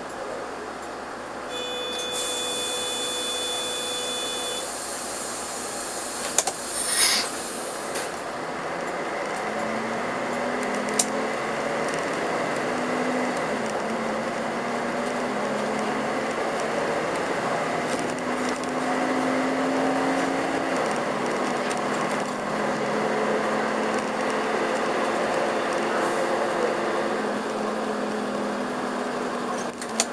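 Karosa B731 city bus heard from inside, pulling away from a stop: a steady electronic tone with a hiss about two seconds in, a short loud burst of air about seven seconds in, then the diesel engine accelerating, its pitch rising and dropping back in steps as the gears change.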